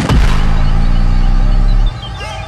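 Trap beat with no vocals: a heavy sustained bass note under a noisy swell, which cuts off just before the end.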